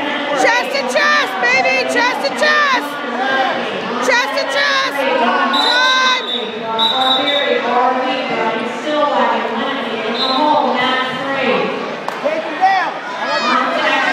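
Spectators' voices in a gymnasium, many people calling and shouting over one another through the whole stretch, with a few sharp knocks in the first few seconds.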